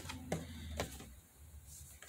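A cardboard doll box being handled and shaken to work the doll out, giving a few faint clicks and taps in the first second.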